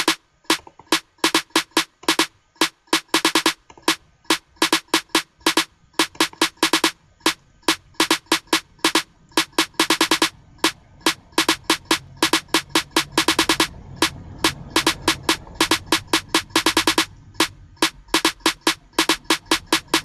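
A programmed trap snare-and-clap sample from FL Studio's channel rack playing a looped step pattern of sharp hits, with a fast roll about every three and a half seconds. A low hum comes in under it about twelve seconds in.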